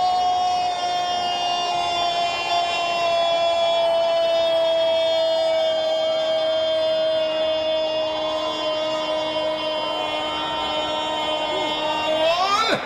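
A football commentator's long, held goal cry: one unbroken shouted note that sinks slightly in pitch and is held for more than twelve seconds, celebrating a goal just scored.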